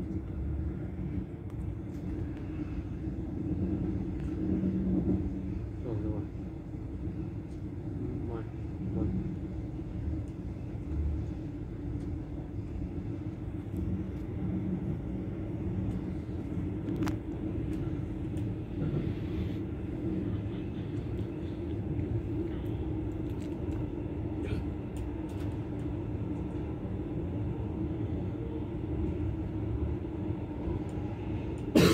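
Steady low rumble of a passenger train running at speed, heard from inside the coach, with a constant hum and occasional faint clicks.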